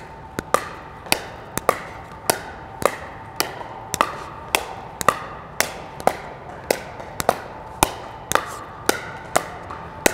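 Two pickleball paddles volleying a hard plastic pickleball back and forth, a sharp pop on each hit at an even pace of about two hits a second.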